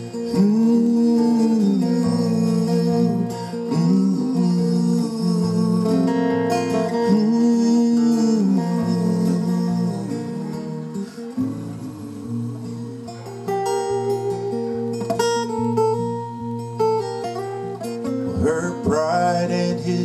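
Live folk music on two acoustic guitars, strummed and picked, with long wordless sung notes that swell and fall over the first half.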